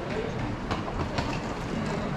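Small hard wheels of a rolling suitcase clacking over the joints of a tiled pavement: irregular clicks over street noise.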